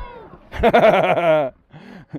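A person's drawn-out shouted call, about a second long, wavering in pitch, in answer to being asked whether the sea water is freezing.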